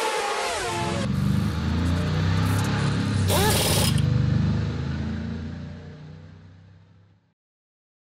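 Logo sound effect of a car engine: a falling whine at the start, then a deep engine rumble with a brief sharp hissing burst about three and a half seconds in, fading out over the last few seconds.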